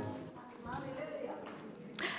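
A brass band's last chord dying away in the hall, followed by a faint voice in the room and a single sharp knock near the end.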